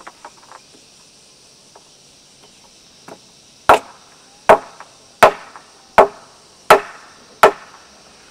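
Six hammer blows on a wooden frame post, evenly spaced about three-quarters of a second apart, starting about halfway in.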